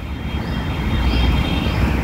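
Steady low background rumble and hiss with no speech, and a faint thin high tone over it.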